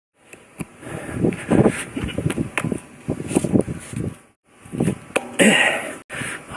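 Shoes scuffing and knocking against a concrete wall and hands slapping onto a railing during a parkour climb, a string of short sharp knocks and scrapes, with bursts of hard breathing and grunts of effort.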